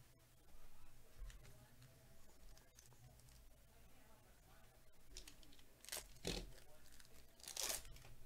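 Plastic-foil trading-card pack wrapper handled and then torn open by hand: soft crinkling from about half a second in, then two loud rips, about six seconds in and near the end.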